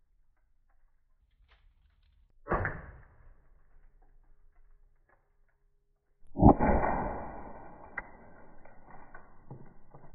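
A CO2-powered Umarex HDR 68 revolver firing .68-calibre pepper balls: a sharp pop about two and a half seconds in, then a louder shot about four seconds later followed by a long, fading ringing tail.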